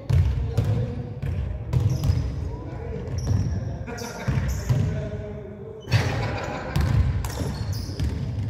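Basketball bouncing on a hardwood gym floor, a string of irregular thuds echoing around the large hall as the ball is dribbled up the court.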